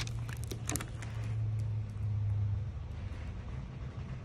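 Light clicks and taps of the plastic car radio head unit being handled, bunched in the first second, over a low steady hum that stops about two and a half seconds in.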